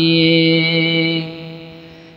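A man's voice singing a Bengali gazal, an Islamic devotional song, holding one long steady note at the end of a sung line. The note fades away over the second half.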